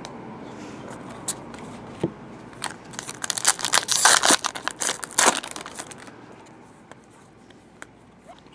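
Foil trading-card pack being torn open and crinkled by hand: a quick run of sharp crackling tears about three seconds in that lasts a couple of seconds, then dies away.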